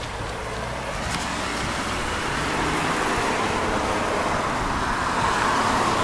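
A car passing on the street, its road noise swelling steadily and peaking near the end.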